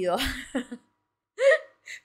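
A woman's voice making non-word sounds, acting out a reluctant little girl: a breathy exclamation with a wavering pitch, then after a short pause a brief voiced sound that turns into a laugh.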